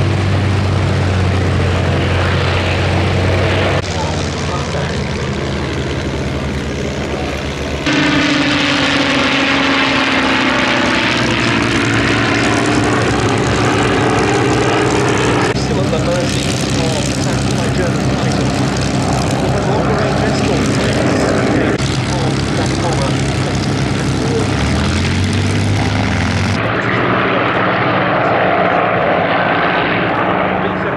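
Piston aero engines running at full power: first the P-51 Mustangs' Packard Merlin V-12s on their takeoff run, then, after several abrupt changes, the B-17 Flying Fortress's four Wright Cyclone radials and the Mustangs flying past in formation. About a third of the way in, one aircraft passes with a falling pitch.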